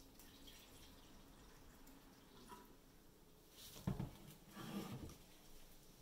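Water pouring faintly from a plastic pitcher into a glass pie plate, then a sharp knock just before four seconds in and a brief bit of handling noise after it.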